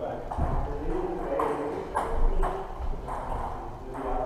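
Table tennis balls clicking off bats and tables in a series of short, sharp ticks, about one every half second in the second half, over background voices.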